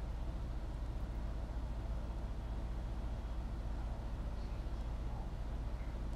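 Steady low hum of indoor store ambience, with no distinct sounds standing out.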